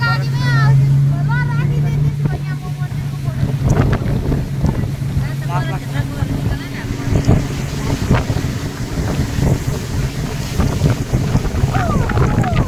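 Motorboat engine running at speed with a steady low hum, under the rush of water and wind buffeting the microphone.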